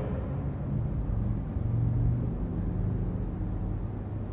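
A low, steady rumble with no speech, swelling a little around the middle.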